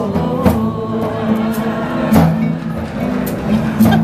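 Live improvised band music: sustained low notes that shift in pitch every second or so, with a few sharp percussive strikes.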